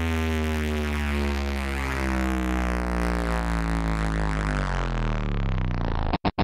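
Hardstyle DJ mix in a beatless stretch: a sustained, buzzing synthesizer drone that slowly sinks in pitch as its brightness fades.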